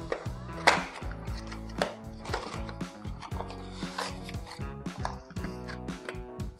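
Background music, over the handling noise of a cardboard box being slid open: a few sharp knocks and scrapes, the sharpest about two-thirds of a second in.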